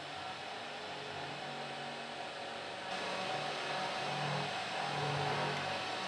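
Steady hiss with a faint low hum that comes and goes, a little louder from about halfway through.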